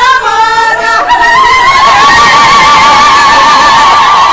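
A long, high ululation: a trilled, rapidly wavering cry that starts about a second in and is held without a break, after a second of children singing.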